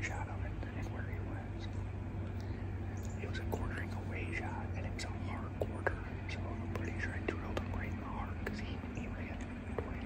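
A man whispering close to the microphone, with a steady low hum underneath.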